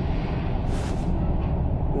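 A low, steady rumble, with a brief hissing whoosh a little under a second in.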